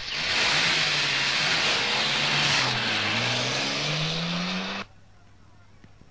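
A car engine revving and driving off, with road noise. The engine note dips and then climbs, and the sound cuts off abruptly near the five-second mark.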